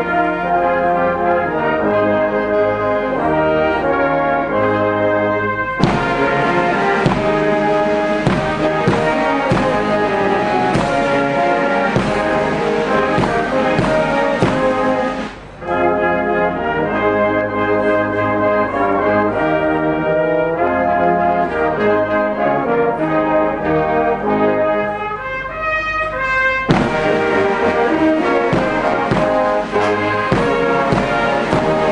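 Brass band playing a slow piece in sustained chords. Drum and cymbal strokes join about six seconds in. The band breaks off for a moment about halfway, resumes, and the drums come back near the end.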